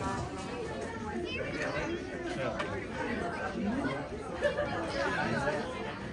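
Chatter of many people talking at once, overlapping voices with no single clear speaker.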